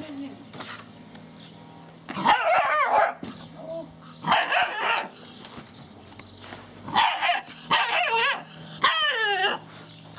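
Gordon Setter puppies yelping and whining in about five short bouts, each a high call that wavers up and down in pitch, the last one sliding downward.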